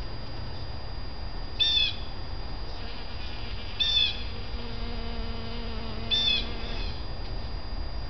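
A bird calling three times, about two seconds apart, each a short high call. Between the second and third call, bees working a camellia flower give a faint low buzz.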